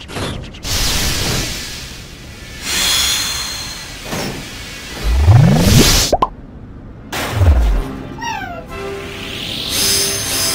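Cartoon action soundtrack: music with whooshing sound effects. About five seconds in, a rising swoop cuts off suddenly into a short gap, followed by a falling swoop and a quick run of descending tones.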